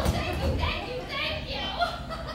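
A high-pitched, animated voice speaking on stage, with a single sharp thump right at the start.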